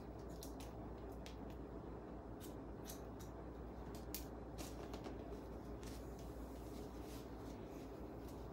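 Hair-cutting shears snipping the ends of long, straight relaxed hair: many short, crisp snips at uneven intervals.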